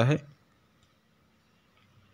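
A man's voice ends a word at the very start, then near silence: faint room tone.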